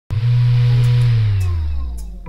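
Intro logo sound effect: a loud low hum with a hiss over it, cutting in suddenly, then slowly sliding down in pitch and fading over the last second, like a machine winding down.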